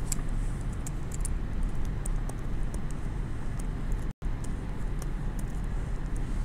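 Stylus tapping and scraping on a tablet screen while an equation is handwritten: a string of faint, irregular clicks over a steady low hum, with the sound cutting out for a moment about four seconds in.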